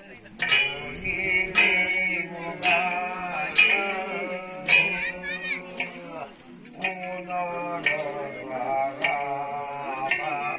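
Male voice singing a Kumaoni jagar in a chanting style, the melody wavering and breaking into phrases, with a sharp percussion strike about once a second and a steady low drone underneath.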